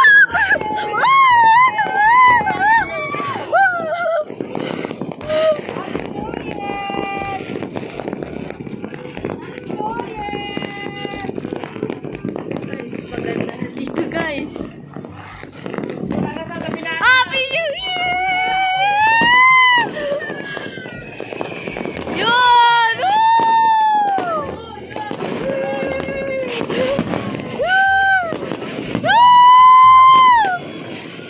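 New Year's midnight din: a continuous crackle and rumble of firecrackers and fireworks, with loud rising-and-falling shouts of voices over it several times, most strongly in the second half. A couple of short steady toots sound early on.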